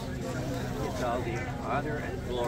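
A man singing to his own acoustic guitar, his voice wavering over sustained low guitar notes.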